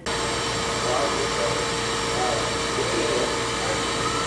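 Steady store ambience that starts abruptly: an even rush of noise with a constant mid-pitched hum and faint distant voices.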